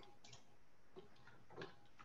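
Near silence with a few faint, scattered clicks from a computer mouse and keys being worked.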